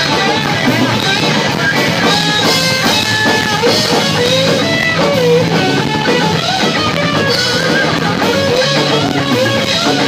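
Live punk rock band playing an instrumental passage on electric guitar, bass guitar and drum kit, with a guitar line bending up and down in pitch over the beat.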